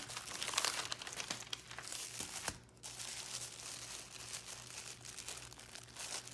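Tissue paper and paper wrapping crinkling and rustling under the hands as a wrapped parcel is lifted out and handled. Busiest in the first two and a half seconds, then a short break, then softer crinkling.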